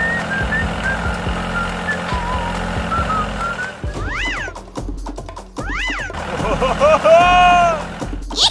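Background music with a simple melody. In the second half come two high pitched calls that rise and fall, and then a longer held call near the end.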